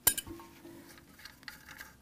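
Small hard clicks and light clinks from the plumbing parts of a toilet fill valve being worked loose at its lock nut. A sharp click comes right at the start, then a few faint clinks near the end.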